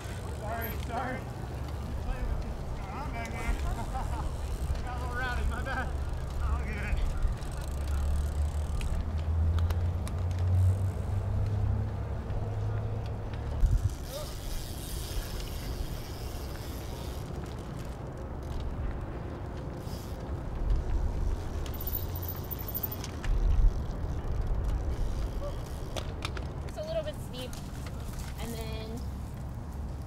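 Cyclocross race-course ambience: a steady low rumble, with spectators' voices shouting now and then from a distance, mostly in the first few seconds and again near the end. Cyclocross bikes pass on the grass course.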